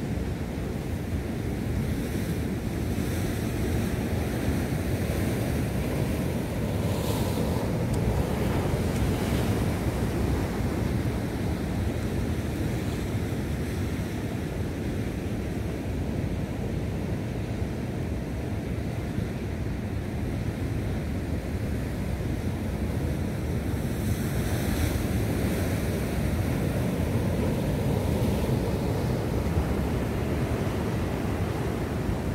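Sea surf breaking and washing over the rocks of a breakwater, a steady rushing with wind rumbling on the microphone; it swells a little louder about seven seconds in and again near the end.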